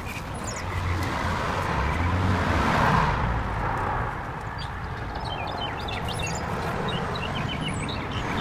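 A car passing by, its noise swelling to a peak about three seconds in and then fading. Birds chirp in the second half.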